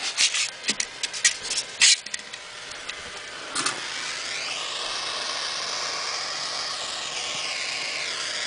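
A few handling clicks and rubs, then a hand-held propane torch hissing steadily from about four seconds in. Its flame is burning into a styrofoam block.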